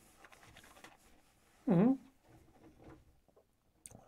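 A man tasting whisky: faint lip and tongue smacks, and one short appreciative "hmm" hum a little under halfway through, its pitch dipping and coming back up.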